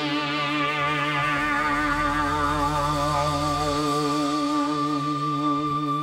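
Live rock band in an instrumental passage: a sustained chord with a steady, even wavering vibrato held over a low bass note, with no vocals.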